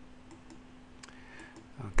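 A few faint computer mouse clicks, the clearest about a second in, over a steady low hum.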